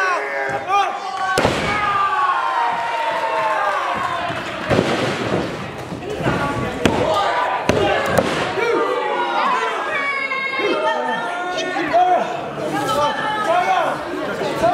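Spectators shouting and talking over a pro wrestling match, with about five sharp slams and thuds spread through it as wrestlers hit the ring and each other.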